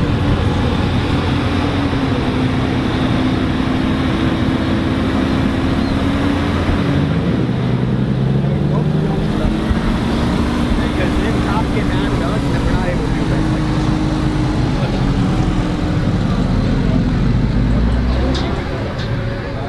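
Car engines running as cars drive slowly past at low speed: a steady low engine rumble whose pitch shifts up and down about halfway through.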